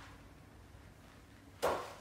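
A single sharp impact about a second and a half in, with a short tail after it: a golf hybrid striking at the bottom of a short practice swing off a hitting mat.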